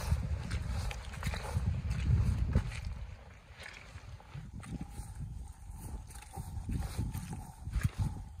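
Footsteps of snow boots squelching and stamping through wet mud, in an uneven walking rhythm. A low rumble lies under the first few seconds, then the steps continue more quietly.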